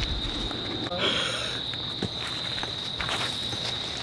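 Crickets chirring in a steady, high-pitched drone, with occasional soft rustles and a couple of light knocks from people moving about on grass.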